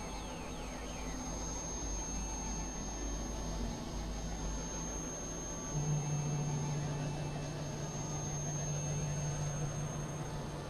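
Experimental electronic drone and noise music from synthesizers: a dense, hiss-like texture over a steady high whine, with a low rumble underneath. About six seconds in, the rumble gives way to a loud, steady low drone.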